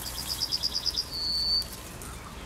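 Yellowhammer singing one full song: a quick run of about eight short repeated notes, then a single long drawn-out final note.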